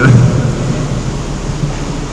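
A steady, fairly loud low rumbling background noise with no clear events, following the last word of amplified speech at the very start.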